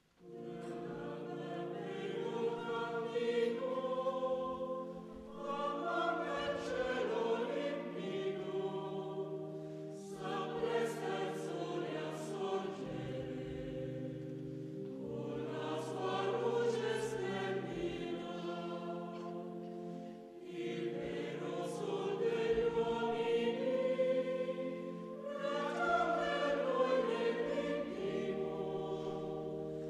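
Mixed choir of men's and women's voices coming in together on a held chord, then singing sustained choral phrases that begin afresh about every five seconds.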